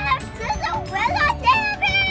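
A young girl's voice chattering in a singsong, with a long high note held near the end.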